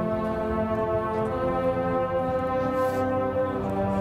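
Brass ensemble, most likely the marching band's horns, playing a slow piece of long held chords that change every second or so.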